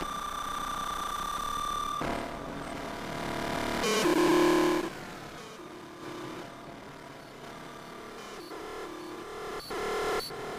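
Modular synthesizer patch playing an irregular, pseudo-random sequence: a held high tone for the first two seconds, then noisy, shifting tones, with the loudest, lower note about four seconds in and sharp clicks near the end. The sequence comes from a shift-register CV and gate generator.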